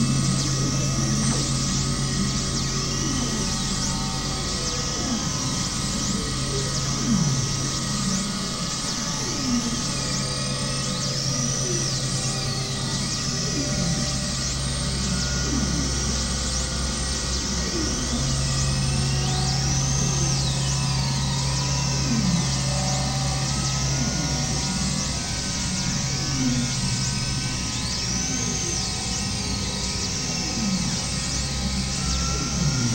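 Experimental synthesizer drone music: steady low drones under a few held tones, with high tones sweeping up and down in arcs every few seconds and short falling glides lower down.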